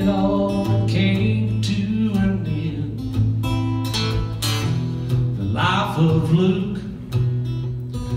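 Acoustic guitar strummed in a steady country rhythm over held bass notes, with a short sung phrase about six seconds in.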